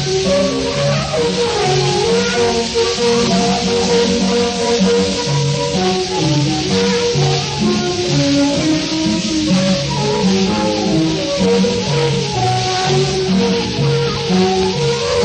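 Music played from a 1934 Pathé 78 rpm shellac record of a Shanghai popular song: a small band playing a lively tune of short, stepping notes, under an even hiss from the old disc.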